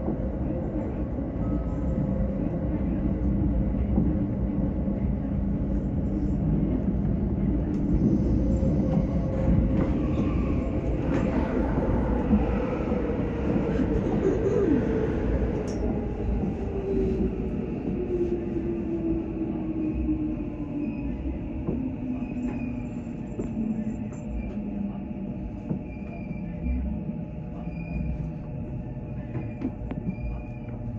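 Electric commuter train heard from the driver's cab: steady rumble of wheels on rail, with a motor whine that falls steadily in pitch through the middle of the clip as the train slows into a station.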